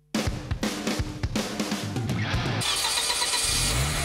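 Radio programme jingle built from car sound effects over music: starting suddenly with a string of sharp clicks, then an engine starting and revving, its pitch rising and falling.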